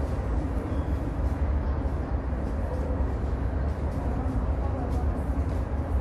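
Underground metro station platform ambience: a steady low rumble with the murmur of people's voices.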